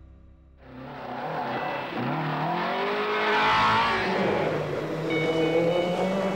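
A car driven hard: its engine revving up and down over a rush of road and tyre noise, starting suddenly about half a second in.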